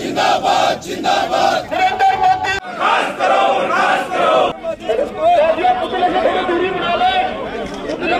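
A crowd of men chanting the slogan "zindabad" over and over in unison. About halfway through, the chant gives way to many voices shouting and talking at once.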